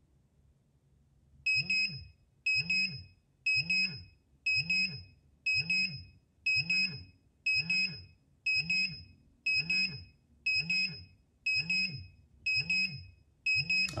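Pudibei NR-750 Geiger counter's dose-rate alarm beeping about once a second, starting about a second and a half in, with a low buzz under each high beep. It is set off as the reading climbs past the 0.50 µSv/h alarm threshold, with the counter sitting on the americium-241 source of a smoke detector.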